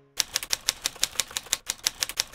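Typing sound effect: rapid, evenly spaced key clicks, about six a second, starting just after the beginning. They go with a web address being typed out letter by letter on screen.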